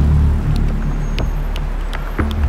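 A low steady rumble with a few faint clicks.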